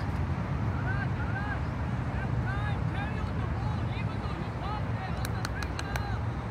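Distant shouts and calls of football players across the pitch over a steady low rumble, with a few sharp clicks near the end.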